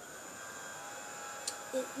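Small electric nail polish dryer's fan starting up and then running with a steady whirring hum and a faint whine.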